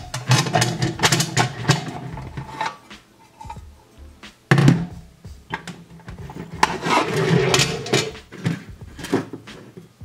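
Aluminium mess-tin parts clattering and knocking as nested tins and a fork are lifted out of the outer tin and set down on a table, over background music.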